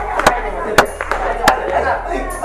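Three sharp smacks, one about every half second to second and standing out above the rest, over a background of indistinct voices.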